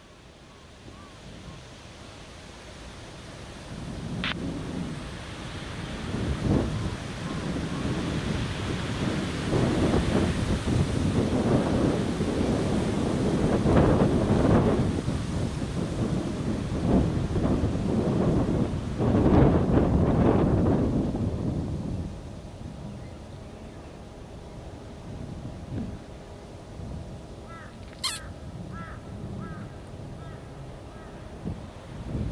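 Wind gusting across the microphone, building over the first ten seconds, strongest in the middle and easing off after about twenty-two seconds.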